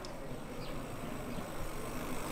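Outdoor street ambience: a steady background noise with a few faint, short falling chirps scattered through it.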